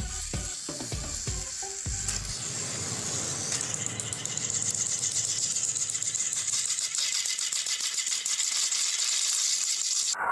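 Battery-powered plastic toy trains running on plastic track: a fast, dense clatter of small motors, gears and wheels that grows slowly louder.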